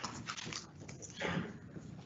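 Applause fading out to a few scattered claps, quietening over the first half-second.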